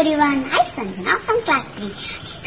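A young girl speaking over a steady, high-pitched hiss.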